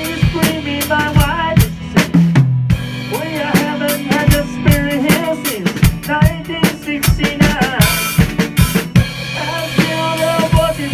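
A band playing live: a drum kit keeps a steady beat with kick and snare under an electric guitar and a bass line. A bending melody line runs through the middle, and a cymbal crash rings out about eight seconds in.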